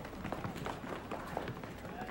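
Running footsteps on the ground, with faint voices in the background.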